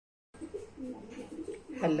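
A pigeon cooing in low, wavering notes. A woman's voice starts speaking near the end.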